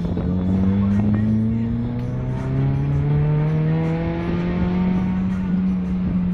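Honda City Type Z's SOHC VTEC four-cylinder engine, running without a muffler, heard from inside the cabin under acceleration: the engine note rises, drops about two and a half seconds in, then climbs again and holds steady.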